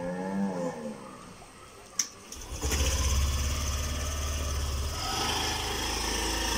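Motor scooter engine being started: a sharp click about two seconds in, then the engine catches and runs at a steady idle. A short pitched call that rises and falls comes at the very start.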